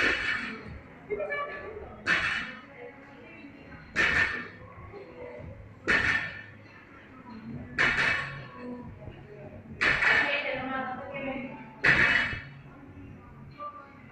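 A weightlifter's hard exhaled grunts, one with each barbell rep, about every two seconds, seven in all.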